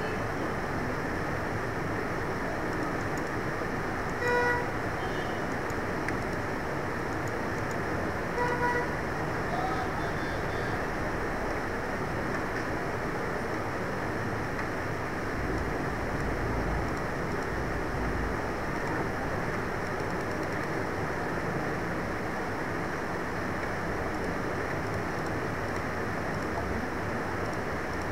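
A steady hiss of background noise, with two short horn-like toots about four seconds apart.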